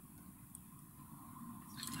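Quiet room tone with faint handling of a plastic model-kit sprue turned in the hands, and one faint tick about half a second in.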